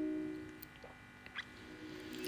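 A held chord of soft plucked-string background music dies away in the first half second. Near silence follows, with two or three faint, brief blips.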